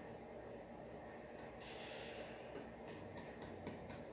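Faint, soft repeated dabbing of a stencil brush pressing paint through a stencil onto a wooden drawer front, with a soft breathy noise about halfway through.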